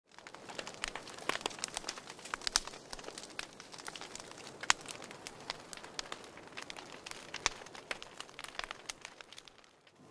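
Irregular crackling: many sharp clicks and pops at uneven intervals over a faint steady hiss, cutting off suddenly near the end.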